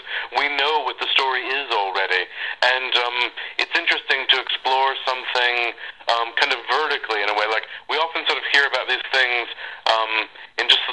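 Continuous speech only: one person talking with a thin, narrow sound, the lows and highs cut off as on a phone or radio line.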